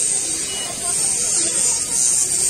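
Indistinct chatter of a street crowd, with a steady high-pitched hiss over it.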